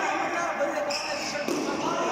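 Badminton racket strikes on a shuttlecock during a fast doubles rally: a couple of sharp hits, over the chatter of voices in the hall.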